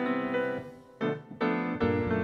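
Grand piano played solo: a phrase dies away almost to nothing, then new chords are struck about a second in and again shortly after.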